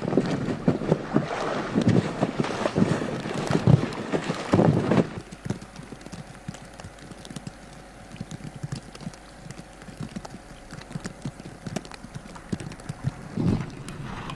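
Deep, heavy snow being cleared with a snow pusher: irregular crunching, scraping and thudding of packed snow under footsteps and the blade, loud for the first five seconds. After that it drops to a quieter stretch of faint crunches and small knocks over a low steady hum.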